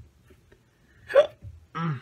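Two short involuntary sounds from a man's throat, of the hiccup or cough kind, made behind his fist. The first, about a second in, is the sharper and louder; the second comes near the end and falls in pitch.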